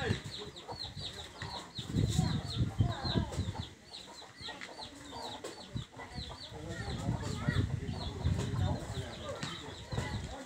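Domestic chickens: a steady run of short, high peeping chirps, about three a second, with lower clucking and rumbling mixed in.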